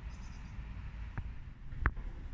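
Outdoor ambience: a steady low rumble of wind on the phone's microphone, with a few faint high chirps near the start and two sharp clicks in the second half.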